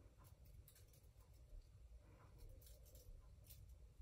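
Near silence, with faint scattered soft ticks and rustles from a gloved fingertip touching and moving over a shellac-coated wax panel as the coat is tested for tackiness.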